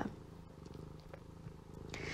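Faint low rumble with a fast, even pulse, with a few faint ticks.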